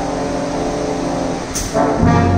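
Big band jazz played live: a softer stretch of held notes, then near the end a cymbal crash as the full band comes back in loud.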